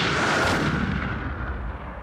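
Opening sound effect: the booming, crashing tail of an intro hit, a rush of noise over a low rumble that fades away steadily over about two seconds.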